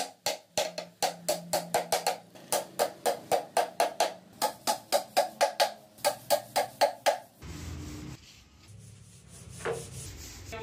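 Hammer driving nails into a plywood box, in quick regular strikes of about four a second. The strikes stop abruptly about seven seconds in, leaving only a faint low background.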